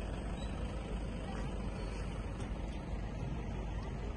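Wind rumbling on the microphone: a steady low noise with no distinct tones.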